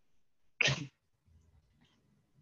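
A person sneezing once, a single sharp burst lasting about a third of a second, a little over half a second in.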